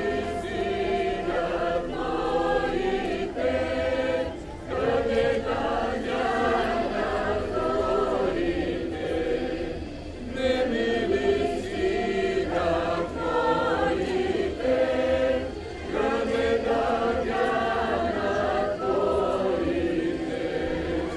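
A group of people singing a Bulgarian folk song together, in long phrases with three short pauses between them.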